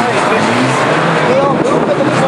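Overlapping voices of a crowd and track staff talking and calling out, over the steady low drone of stationary race car engines running.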